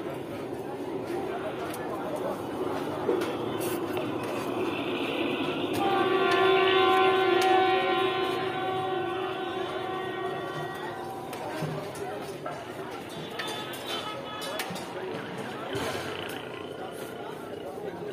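Busy street background of voices and traffic noise. From about six to eleven seconds in, a long steady horn sounds; it is the loudest sound.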